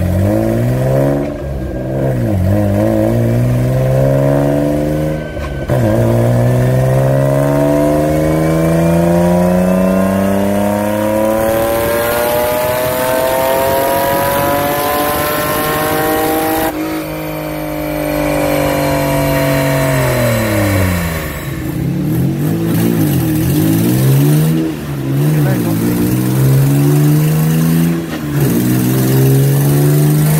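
Nissan RB20E 2.0-litre straight-six on a chassis dyno. A few short throttle blips come first. Then comes a wide-open-throttle pull, the engine note climbing steadily for about eleven seconds until the throttle is cut off sharply at the top; the revs wind down, and several more rev rises and drops follow near the end.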